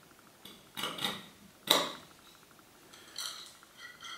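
A few light metallic clinks and knocks, the sharpest a little under two seconds in, as a wooden plate carrying a threaded steel rod with nuts and washers is fitted onto a metal 5-litre beer keg.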